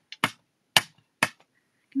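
Plastic ink pad case tapped and pressed onto a glass craft mat to lay down ink: about four sharp clicks in the first second and a bit.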